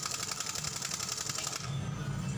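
Impact wrench hammering on the tight clutch hub nut of a Honda TMX 125: a fast, even rattle of blows that cuts off suddenly about one and a half seconds in. The hub turns with the nut instead of the nut breaking loose.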